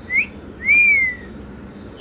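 Two high, clear whistled notes: a short rising one, then a longer one that rises and falls, over a steady low background hum.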